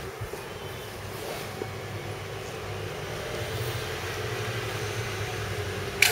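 Steady low mechanical hum with a hiss, growing a little louder partway through, with a few faint knocks near the start.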